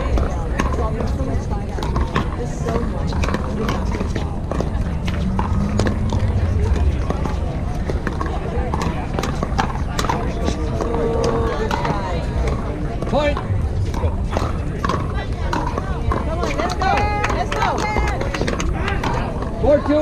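Pickleball rally: repeated sharp pops of paddles striking the hollow plastic ball, over steady background chatter of voices from spectators and neighbouring courts.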